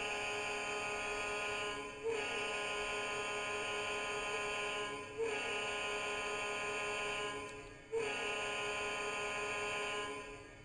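A steady, even-pitched buzzing tone, held about three seconds at a time and sounded four times in a row with brief breaks between.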